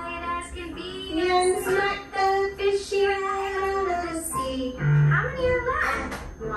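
A children's song playing on the TV: a child's voice singing long held notes over music.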